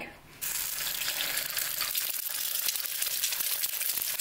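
An egg frying in hot oil in a small pan, sizzling with a fine crackle. The sizzle starts suddenly about half a second in and stays steady.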